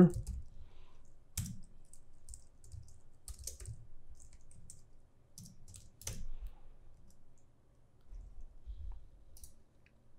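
Typing on a computer keyboard: scattered, irregular key clicks, with two sharper clicks about a second and a half in and about six seconds in.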